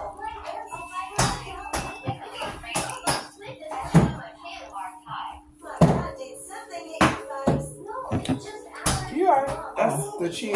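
Irregular sharp knocks and thumps, about a dozen of them, over indistinct talking and faint background music, with a steady low hum throughout.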